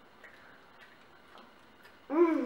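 Near silence with faint, soft ticks about every half second.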